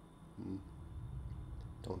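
A man's brief, low vocal sound about half a second in, followed by faint low rumbling and a small click just before speech resumes.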